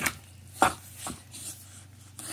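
A puppy licking and mouthing a sour lemon half, making a few short wet mouth smacks, the loudest about two-thirds of a second in.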